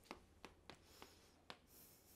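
Chalk writing on a chalkboard, faint: a few short taps and scratches as the chalk strikes and drags across the board, about five in two seconds.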